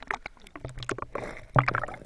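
Shallow river water splashing and sloshing right at the camera as a hand lowers a striped bass into it. A run of sharp splashes, the loudest about one and a half seconds in, as the camera dips under the surface.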